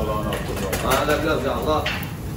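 A man's low, wordless voice, with a steady hiss from the charcoal kebab grill underneath and a few light clicks.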